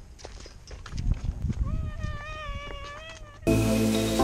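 A single drawn-out high-pitched call, nearly level in pitch with a slight waver, lasting about two seconds, over low wind rumble on the microphone. Loud music cuts in abruptly just before the end.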